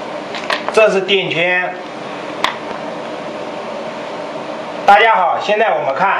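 A steady low hum runs throughout, with two short stretches of a man's voice and a single sharp click about two and a half seconds in.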